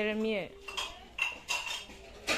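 Metal kitchenware clinking: about five sharp knocks of steel pots, bowls or utensils over a second and a half. They follow a short falling voice sound at the very start.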